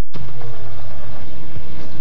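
Television promo soundtrack starting suddenly after a split-second of silence: a steady low rumbling drone with dramatic music over it.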